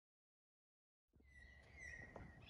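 Digital silence for about a second, then faint outdoor background with a bird calling: one thin, high held note with a few short chirps above it.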